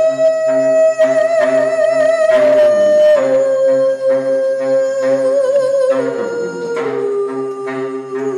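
Live duet: a woman's voice holding long, wavering notes that step down in pitch a few times, over a baritone saxophone playing a quick, repeating low figure. No words are sung.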